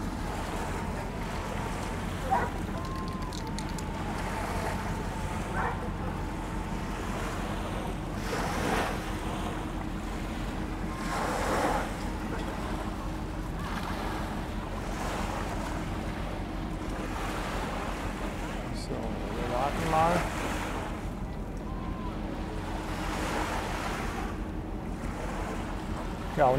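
Small waves washing on the shore of the river Elbe, with wind buffeting the microphone and a steady low hum underneath; a faint voice comes through now and then.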